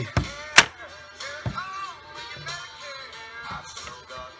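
The break action of a Stevens 311C 20-gauge side-by-side shotgun being closed: a sharp metallic snap about half a second in, then a duller knock about a second later, over background music.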